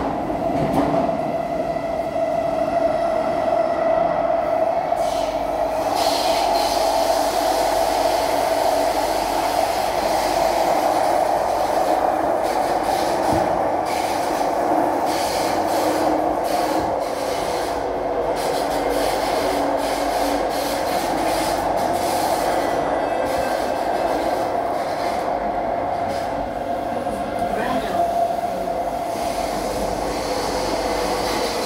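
Kawasaki–CRRC Sifang C151B metro train running between stations, heard from inside the passenger car. It makes a steady rumble of wheels and running gear with a persistent mid-pitched tone, plus fainter higher tones in the first few seconds.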